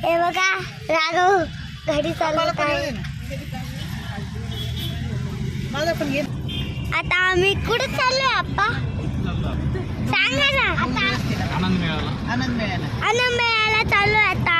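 Steady low rumble of a car driving, heard from inside the cabin, with high voices, a young child's among them, calling out at intervals.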